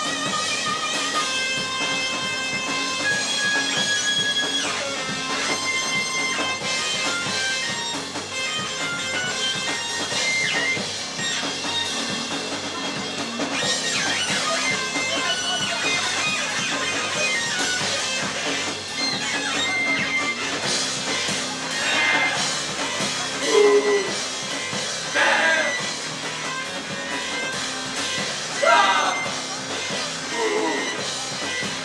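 Live electro space-rock band playing an instrumental passage: electric guitar and synthesizer keyboard over drums. Held synth notes fill the first half, and a few sliding notes stand out in the last third.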